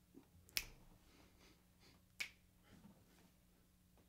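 Two finger snaps about a second and a half apart, over near silence with a faint steady hum.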